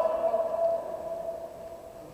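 A person's long drawn-out call, held on one pitch and fading out about a second and a half in.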